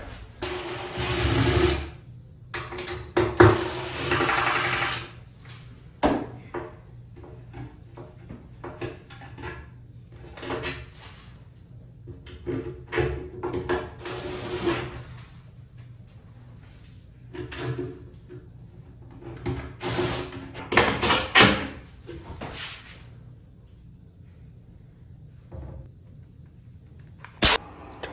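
Cordless drill-driver running in repeated short bursts of a second or two, fastening the vanity's drawer hardware. A sharp click comes near the end.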